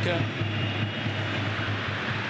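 Football stadium crowd: a steady din of many spectators.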